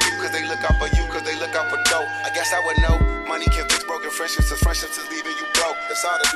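Hip hop track with rapped vocals over a beat: deep bass hits about once a second, quick high ticks, and a sustained synth melody that steps between notes.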